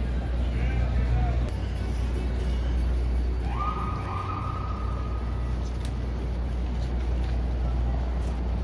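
Busy city street ambience heard while walking along a sidewalk: a steady low rumble of traffic with faint passers-by's voices. About three and a half seconds in, a single high tone rises and holds for about two seconds.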